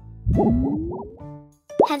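Cartoon sound effect: a quick run of bouncy, plopping pitch swoops with a slide rising under them, over light children's background music.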